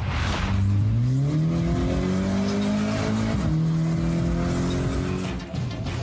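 Audi car engine heard from inside the cabin, pulling hard: its pitch climbs steadily for about three seconds, drops suddenly at a gear change, then holds steady at speed. A short rush of noise comes at the very start.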